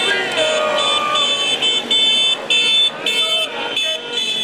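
Car horns honking over and over in short repeated blasts from a slow celebratory caravan of cars and motorcycles, with people's voices shouting over the traffic.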